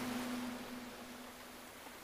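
The reverberant tail of a Quran reciter's voice fading away between verses: one faint held tone dies out after about a second and a half, leaving a faint hiss.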